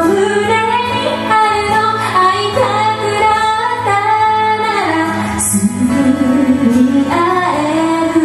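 A woman singing a Japanese song with long held notes, accompanying herself on a keyboard piano.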